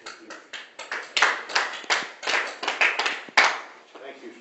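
A few people clapping in scattered, uneven claps rather than a steady round of applause, with the loudest clap near the end.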